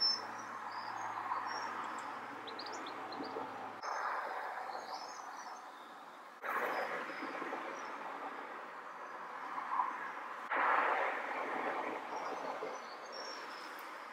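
Faint steady background noise with a few faint high chirps in the first couple of seconds. The noise changes abruptly a few times.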